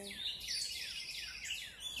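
Songbirds singing together: a quick run of short chirps that fall in pitch, overlapping a rapid trill.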